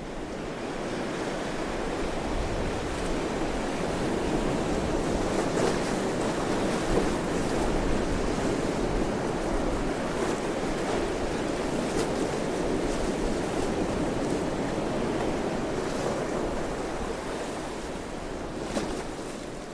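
A steady rushing noise with a few faint scattered crackles and no music or voice.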